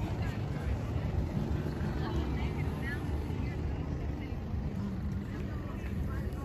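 Outdoor background noise: a steady low rumble with faint voices in the distance.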